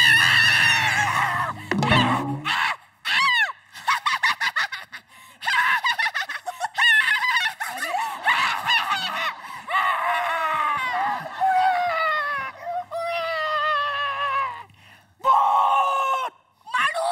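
High-pitched shrieks and wavering wails from two performers in ghost make-up, coming in short runs with brief gaps between them. A low steady hum sits under the first couple of seconds.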